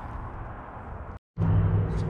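Steady low mechanical hum with room noise. It drops out completely for a moment a little over a second in, then comes back louder and steadier.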